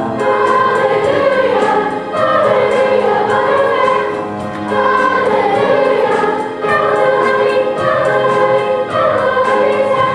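Children's choir singing with instrumental accompaniment, in phrases of about two seconds separated by short breaks.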